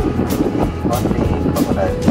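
Tour boat's engine running steadily underway, a low continuous hum, with voices over it.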